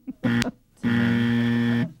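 Game-show buzzer sounding one steady, flat-pitched buzz about a second long, just after a contestant's answer has been called wrong. A short blip with a click comes just before it.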